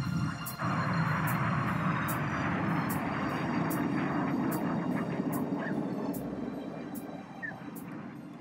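Several BAE Hawk T1 jets passing overhead in a display break: loud jet noise comes in suddenly under a second in, holds, then slowly fades over the last two seconds.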